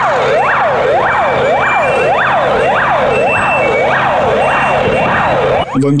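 Fire engine's electronic siren sounding a fast wail, its pitch sweeping up and down about twice a second, with the truck's engine running underneath. A voice starts to speak at the very end.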